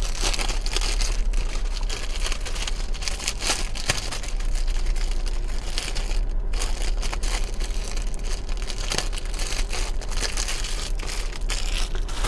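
Clear plastic packaging crinkling and rustling as it is handled, a dense run of small crackles.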